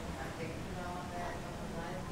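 Faint, indistinct voices talking over a low steady hum.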